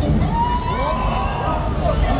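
Low rumbling rush of a flame effect bursting from a prop tanker truck, with people's voices rising and falling over it.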